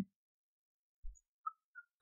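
Near silence, broken by a faint low thump about a second in and two very brief, faint high blips shortly after.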